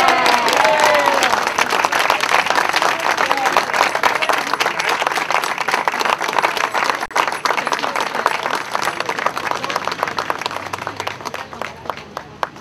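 A small crowd applauding, loudest at the start with some cheering voices, then gradually thinning out into scattered claps near the end.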